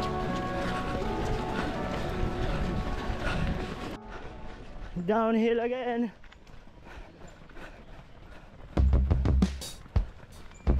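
Background music with held notes, cut off abruptly about four seconds in. Then a single drawn-out, wavering voice call lasts about a second. Near the end come loud low thumps of running footfalls jolting the body-worn camera.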